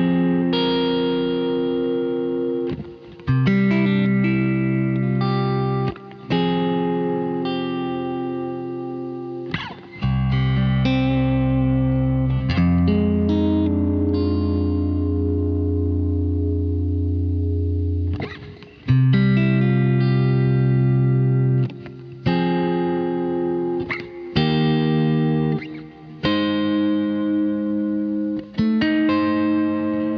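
Freshly strung Mayones electric guitar played through its preamp, adding compression and EQ, with effects: chords held ringing for a few seconds each, with short stops between them.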